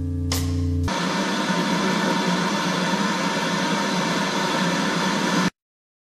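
The tail of a piece of drum-kit music: a held low chord with a cymbal-like crash about a third of a second in, stopping about a second in. Then a steady hiss of static noise, which cuts off suddenly about five and a half seconds in.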